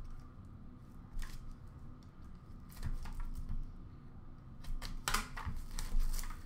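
Hands opening a trading-card pack box and handling the cards and packaging inside: a few scattered light clicks and rustles, spaced a second or two apart.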